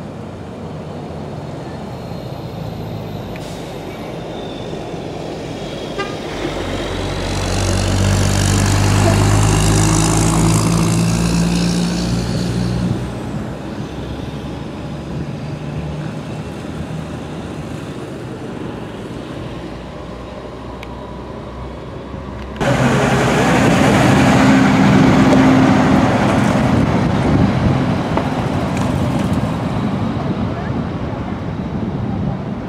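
Road traffic on a highway. A heavy vehicle's engine draws near, is loudest about ten seconds in, and fades. About two-thirds of the way through, a louder rush of vehicle noise starts abruptly.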